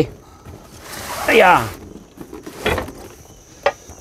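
Cardboard case of bottled water being set down and slid into place on a wooden floor, with a scraping rustle about a second in. A person's brief falling-pitch voice sound overlaps it, and there is a short vocal sound and a light knock near the end.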